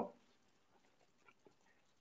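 Near silence: faint room tone between spoken sentences, with two barely audible soft ticks about a second and a half in.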